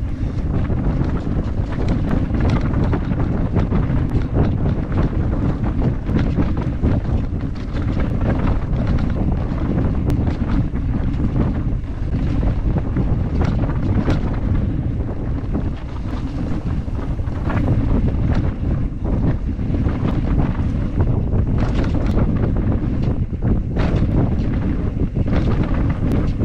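Heavy wind rush on an action camera's microphone as a mountain bike rides fast down a dirt trail, with frequent sharp clicks and knocks from the bike rattling over the ground.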